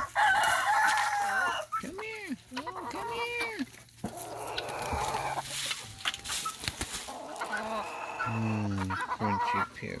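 A flock of chickens calling and clucking in a run of separate calls, with a rooster crowing among them.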